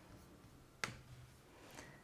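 A single sharp computer mouse click about a second in, with a fainter tick near the end, over otherwise near-silent room tone.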